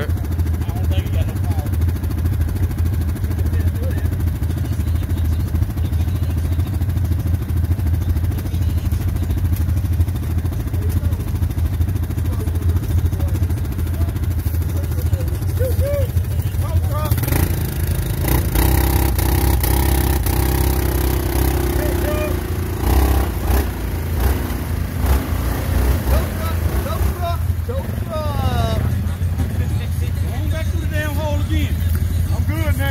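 ATV engines running steadily in deep mud, with a louder stretch of harder revving a little past the middle as a stuck ATV is winched out of a mud hole.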